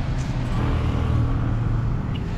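Road traffic noise with a motor vehicle engine running steadily.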